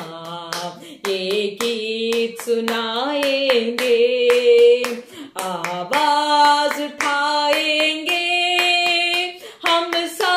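A woman singing a Hindi Christian worship song solo, holding long notes, while clapping her hands in a steady beat.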